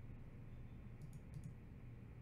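A few faint short clicks, in two quick pairs about a second in, over a low steady room hum.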